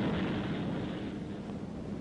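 Loud, steady rumbling roar on an old film soundtrack, starting abruptly just before and easing slightly over the first second, with no separate bangs.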